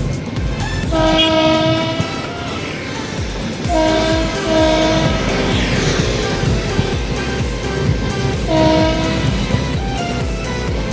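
Train horn sounding a steady-pitched blast about a second in, two shorter blasts around the middle and another near the end, over the continuous rumble and wheel clatter of a passing coach train.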